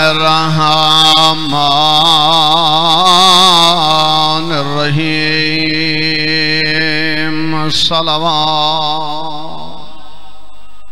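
A man chanting a melodic religious recitation, his voice wavering and gliding in pitch, over a steady hum. A sharp click comes about eight seconds in, and the chanting fades away near the end.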